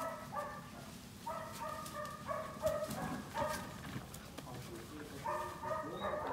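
Belgian Malinois puppies at play, giving short, high yips in quick runs of two or three, with some lower growling sounds, over light rustling and clicks from the plastic bag they are tugging.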